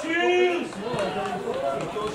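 Men's voices shouting and calling at a football pitch: one loud, drawn-out shout in the first half-second, then several voices talking and calling over one another.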